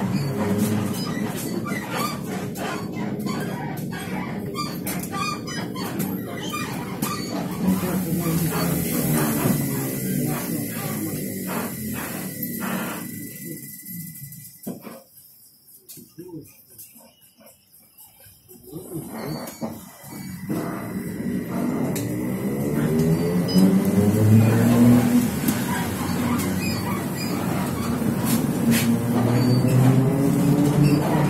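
TrolZa-62052 trolleybus's electric traction drive heard from inside the cabin. Its whine falls in pitch as the trolleybus slows and dies away to near silence for a few seconds while it stands. Then the whine rises in pitch and grows louder as it pulls away again.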